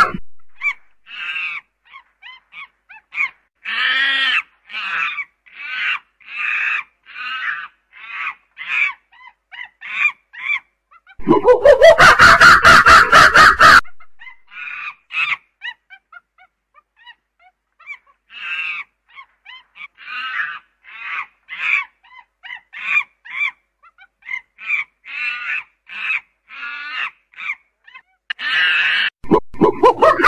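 A primate calling: a run of short, high, rapid calls at about two a second, broken about eleven seconds in by a loud screaming outburst that rises in pitch, then the short calls again until a second loud outburst near the end.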